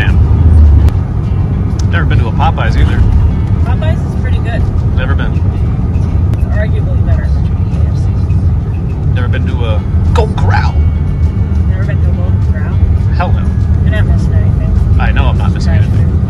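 Steady low engine and road rumble heard inside the cabin of a 2002 GMC Savana 3500 cargo van driving on a town street. Music and a voice come in over it in short phrases every few seconds.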